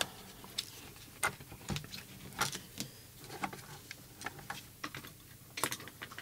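Hands handling a plastic RC transmitter case, making irregular light clicks and taps.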